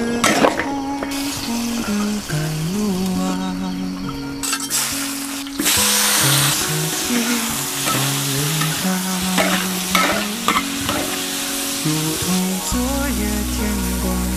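Sliced cucumber and garlic stir-frying in a hot wok, with a spatula stirring and scraping; the sizzling gets suddenly loud about six seconds in. Background music plays throughout.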